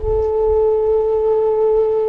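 A single steady sustained tone, nearly pure, held without wavering and ending as speech resumes.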